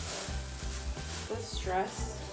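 Thin plastic shopping bag rustling and crinkling steadily as a knit sweater is pulled out of it, over background music with a singing voice.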